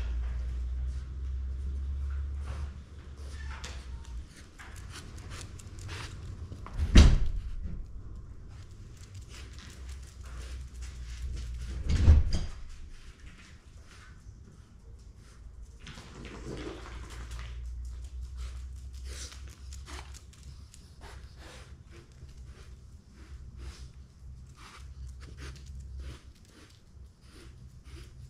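A dog searching along a line of small metal buckets on a concrete floor: scattered light ticks and clinks, with two louder knocks about seven and twelve seconds in, over a low steady hum.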